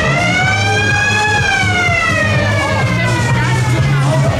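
A single siren wail rising to a peak about a second in, then slowly falling, over loud fairground dance music with a steady bass beat.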